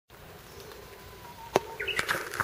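Outdoor ambience: a steady hiss with a faint thin tone, a single sharp click about one and a half seconds in, and a short high chirp near the end.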